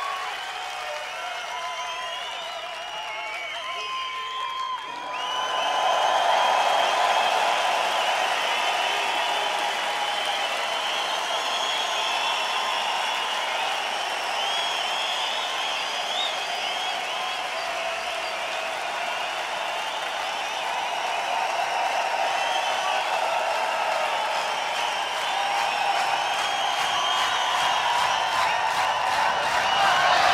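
Large concert crowd cheering and whistling at the start of a live techno set, swelling about five seconds in, with a faint steady tone held underneath.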